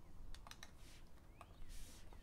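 A stylus tapping a few times on an iPad's glass screen, light sharp clicks, then a short scratchy stroke near the end.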